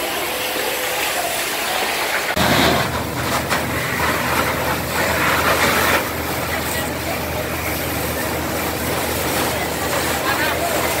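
A steady low engine drone, typical of a fire engine running at the scene, starts about two seconds in. It sits under a constant hiss of water spraying from fire hoses, with people's voices in the mix.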